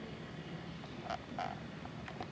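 Microphone handling noise from a lectern microphone being adjusted on its stand: two short knocks about a third of a second apart, about a second in, over a faint low hum.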